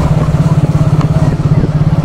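Motorcycle engine running steadily under way, with a fast, even low throb.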